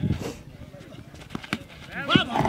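A tennis ball struck by a cricket bat, one sharp knock about one and a half seconds in, over faint distant voices.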